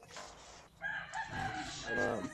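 A drawn-out animal call that starts about a second in and is held steady for about a second.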